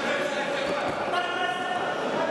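Several voices calling out at once, echoing in a large sports hall, with a dull thump about the middle.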